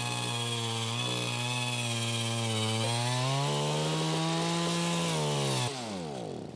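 A power ice auger boring down through ice, its motor running at a steady high speed with the pitch dipping and recovering as it works. Near the end the motor winds down and its pitch falls.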